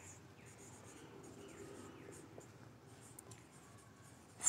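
Faint squeaks and scratches of a marker pen writing on a whiteboard, a run of short strokes one after another.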